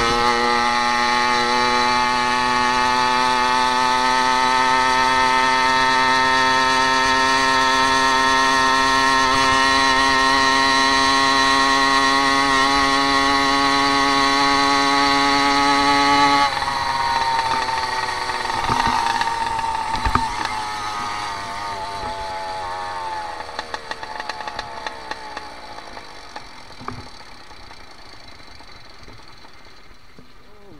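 A motorized bicycle's small two-stroke engine running hard under load, its pitch creeping slowly upward as the bike gains speed. About sixteen seconds in the note drops suddenly as the throttle is closed, then falls away gradually and grows quieter as the bike slows, with a few light clicks.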